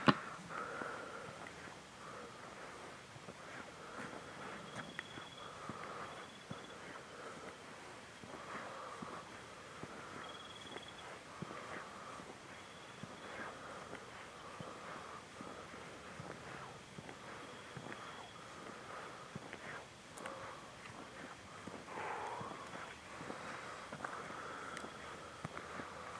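Faint footsteps on an unpaved road, a steady walk with scattered small crunches and soft breathy rustles close to the microphone.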